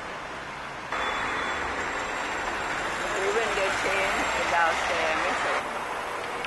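Busy city street noise: traffic running by, with a crowd of passers-by talking that gets louder about a second in. People's voices stand out for a couple of seconds near the middle.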